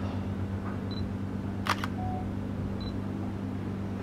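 A steady low hum with a single sharp click a little before two seconds in.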